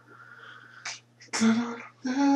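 A person sneezing once about a second and a half in: a sharp, explosive burst with voice in it, lasting about half a second.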